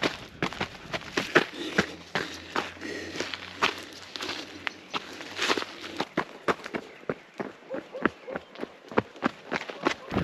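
A trail runner's footsteps on loose gravel and rock, short crunching strikes at a steady running stride of about three steps a second.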